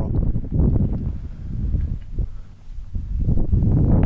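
Wind rumbling on the microphone, with a few faint knocks, easing off briefly a little past the middle.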